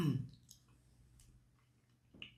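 A brief wordless vocal sound from a man, a short hum or grunt falling in pitch, right at the start, followed by a few faint clicks.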